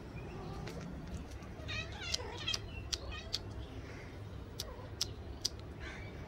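Kitten mewing in a quick run of high calls about two seconds in, followed by several sharp clicks.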